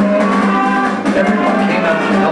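A school band of brass and woodwind instruments playing sustained chords, with a low note held underneath.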